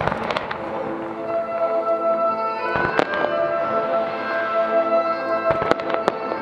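Fireworks going off over music played for a synchronized display. Sharp bangs stand out in a cluster at the start, once about halfway and two or three times near the end, with steady music underneath.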